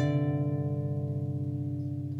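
Lever harp: a chord plucked once at the start and left ringing, fading slowly with a slight wavering in its sustain.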